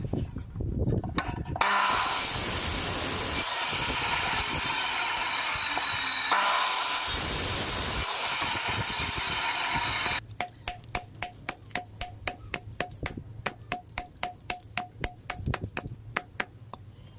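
An electric power saw spins up twice, about 2 s and 6 s in, each time with a rising whine, and cuts through a bamboo tube with a loud, steady noise whose tone slowly falls; it stops about 10 s in. After that come rapid, even strikes, about four a second, each with a short ring, of a blade being knocked into a bamboo tube set in a wooden block.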